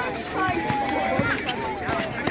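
Players and spectators shouting and calling out around a basketball game, with one drawn-out call in the middle. Scattered thuds from sneakers and the ball on the asphalt court as players run.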